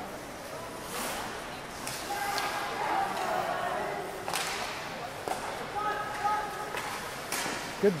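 Ice hockey game play: sharp cracks of sticks and puck hitting at irregular intervals, about six over the stretch.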